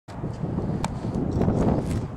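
Wind buffeting the camera's microphone in an uneven low rumble, with a few sharp clicks of handling or footsteps.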